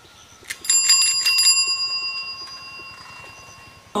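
Bicycle handlebar bell rung rapidly, about six strikes within a second, its ring fading away over the next two seconds.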